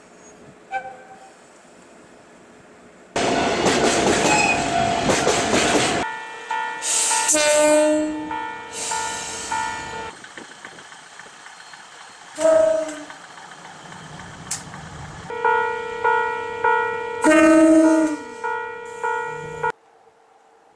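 Railway horns from several different trains, joined with hard cuts: a short toot about a second in, a long loud blast from about three to six seconds, then steady pitched horn tones. A brief toot comes a little after twelve seconds, and a run of short horn blasts in quick succession comes near the end.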